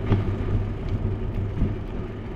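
Steady low rumble of wind and road noise on a bicycle-mounted action camera while riding on asphalt, with a few light clicks and rattles from the bike.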